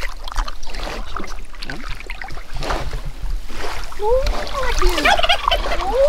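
A run of short rising-and-falling animal calls about four seconds in, over a steady low rumble and the wash of shallow water.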